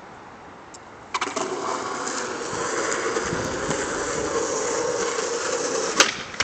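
A clack about a second in, then skateboard wheels rolling on concrete, a steady rumble that grows louder as the board approaches, ending with a sharp snap as the tail is popped for a hardflip.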